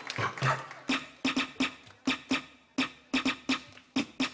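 Music: the sparse percussion intro of a pop song, a syncopated pattern of sharp, clicky hits with a short low thud under each.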